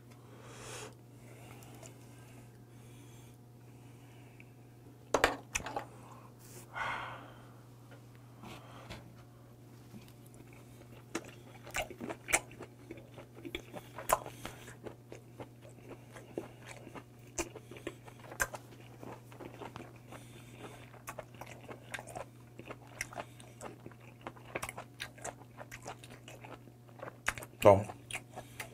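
Close-up chewing of boiled white whelk meat: wet mouth clicks and smacks, sparse at first and coming thick and fast in the second half. A steady low hum runs underneath.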